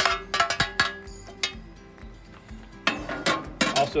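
Metal tongs and a metal sheet pan clinking and scraping against a serving dish as grilled vegetables are moved across, a series of sharp clicks, thickest in the first second and again about three seconds in.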